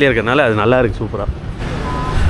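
A person talking for about the first second, then a quieter stretch of steady low rumble.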